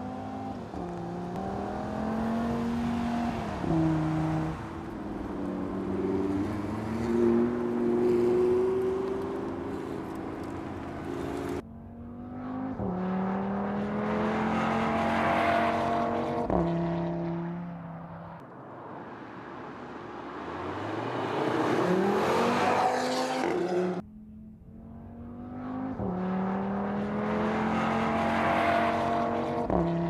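Audi TT RS's turbocharged 2.5-litre five-cylinder engine accelerating hard through the gears. The revs climb and drop sharply at each upshift, across several takes cut together, one building from quiet to loud about twenty seconds in.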